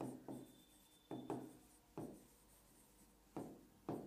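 Stylus writing on an interactive touchscreen display board: a faint, uneven series of about seven short taps and strokes as letters are written.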